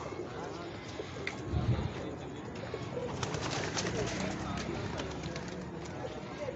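Domestic pigeons cooing, low and intermittent, with faint clicks and rustles as a pigeon is handled.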